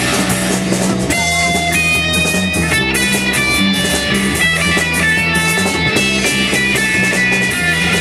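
Live rock band playing an instrumental passage: electric guitar and electric bass over drums, with a melodic line of held notes coming in about a second in.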